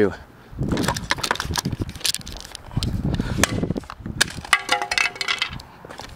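Casio fx-7700GE plastic graphing calculator thrown down onto asphalt: a series of sharp clacks and knocks, the loudest about four seconds in.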